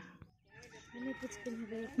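Domestic chickens clucking, with a rooster crowing, faint, starting about half a second in.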